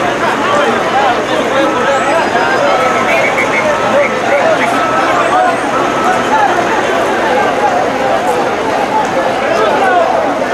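A crowd of onlookers talking over one another: a dense, steady babble of many voices. A short high tone repeats about once a second through the first half.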